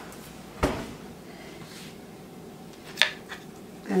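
A kitchen oven door swung shut with one low thump, then a short sharp knock near the end.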